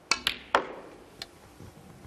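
Snooker shot: the cue tip striking the cue ball and hard resin balls clicking against each other, three sharp clicks in the first half-second with the third loudest, then a fainter click about a second in.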